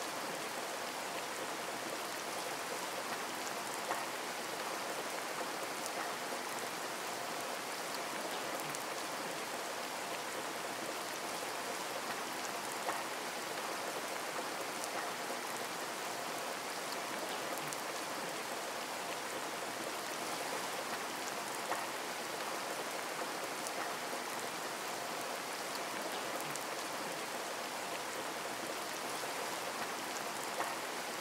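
Steady rain falling, an even unbroken hiss of drops, with a slightly louder drop about every nine seconds.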